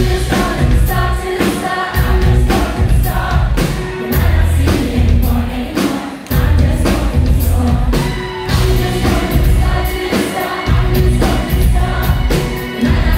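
Live pop song played by a band, recorded from the audience: female lead vocal over electric bass guitar and drums, with a strong bass and a steady beat.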